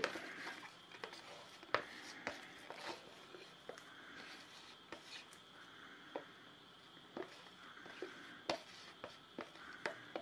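Faint, irregular light clicks and taps from a plastic mixing cup and silicone mould being handled while resin is poured, over a faint steady high-pitched whine.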